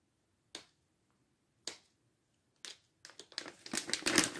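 Plastic snack pouch being torn open by hand: three single crinkles about a second apart, then quick, continuous crinkling of the pouch from about three seconds in.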